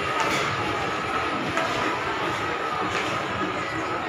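Shopping-mall ambience: a steady wash of crowd murmur in a large hall, with faint background music under it.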